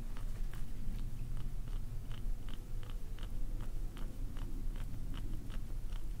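A wooden reflexology stick working into the sole at the base of a toe, giving small crunching clicks at a steady pace of about two or three a second, the gritty 'gori-gori' sound of reflexology stick work. A low steady rumble sits underneath.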